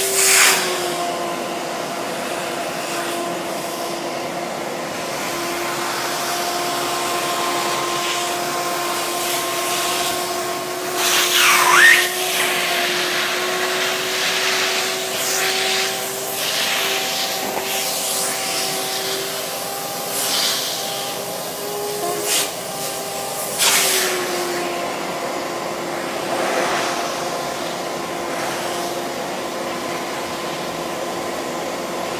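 Shop vac running steadily with a whine, its hose nozzle drawn over a deer mount's hair to suck out cleaning foam and moisture. The suction note shifts as the nozzle seals against and lifts off the hair, with a sharp whistle about twelve seconds in and a few smaller flare-ups later.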